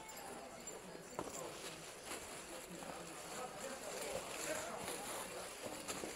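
Clear plastic wrapping crinkling and rustling as handbags are pulled out of their packaging, in a quick run of small crackles and clicks, with voices murmuring in the background.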